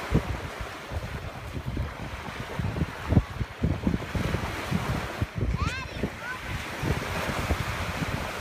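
Wind buffeting the microphone in uneven gusts over a steady wash of surf. A brief high rising voice sound comes about two-thirds of the way through.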